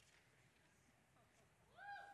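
Near silence, with a faint click at the very start. Near the end a faint high pitched sound with overtones glides up and holds.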